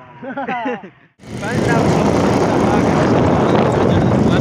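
A man's voice in the first second, then, after an abrupt cut, loud rushing wind on the microphone and running noise from a moving motorcycle carrying riders, with voices over it.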